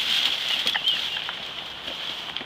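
A scuffle of people grappling and tumbling onto pavement: a cluster of knocks and scrapes in the first second or so, louder at first and easing off.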